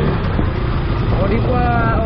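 Motorcycle riding at low street speed: a steady engine and road rumble with wind on the microphone. A man's voice starts talking over it near the end.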